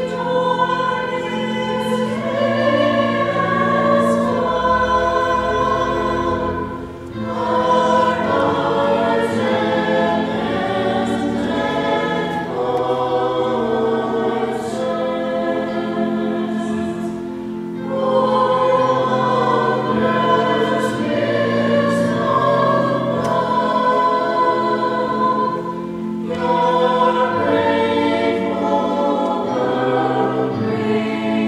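A group of voices singing a hymn together in phrases, with held low notes of accompaniment underneath and short breaks between phrases about seven, eighteen and twenty-six seconds in.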